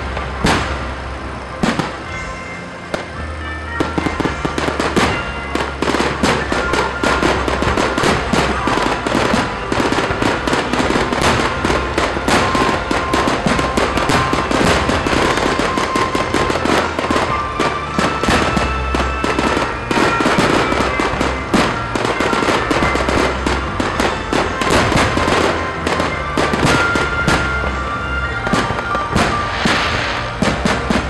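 Aerial fireworks display: a rapid, continuous run of shell bursts and crackling reports, with music playing underneath.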